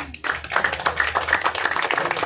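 An audience clapping: many hands clapping in a dense, irregular patter.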